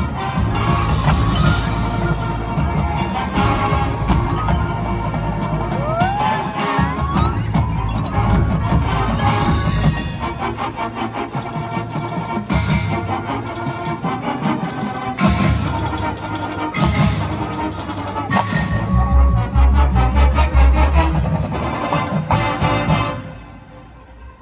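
A high school marching band playing live, heard from the stadium stands: full brass with drumline and front-ensemble mallet percussion, loud and dense throughout. The music cuts off about a second before the end.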